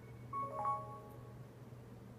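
Startup jingle of a ZTE-built Cosmote Xceed smartphone playing through its small speaker as it boots: a quick cluster of short chime notes about half a second in, ringing out within the next second, over a steady low hum.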